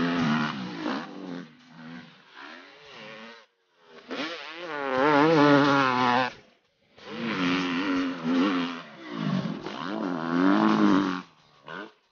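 Dirt bike engine revving hard, its pitch rising and falling with the throttle and gear changes. It comes in three stretches, each cutting off suddenly.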